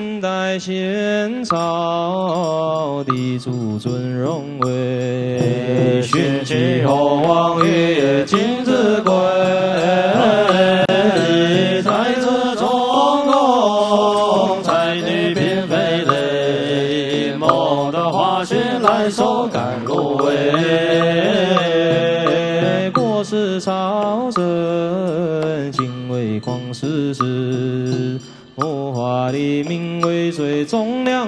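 Buddhist liturgical chanting: a classical Chinese verse sung to a slow, drawn-out melody, the voice holding long notes and gliding between them. There is a brief pause near the end.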